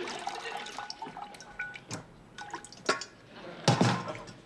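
Water dripping into a kitchen sink after the tap is turned off, with short plinks and light clicks as wet food and a pot are handled. A single louder knock comes near the end.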